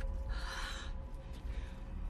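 A short, breathy vocal sound, like a gasp, lasting under a second, over a steady low hum.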